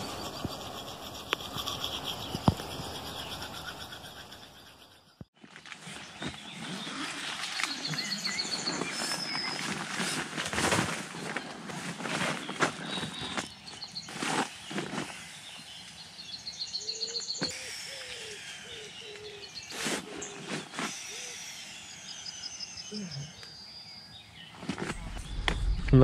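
Outdoor ambience with birds chirping in repeated short trills, along with scattered knocks and rustles. A steady background hiss fills the first five seconds and cuts off abruptly.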